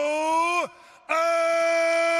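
A male ring announcer calling out the winner's name in long, drawn-out vowels. One held note rises slightly and breaks off just after half a second in. A second long, level note starts about a second in.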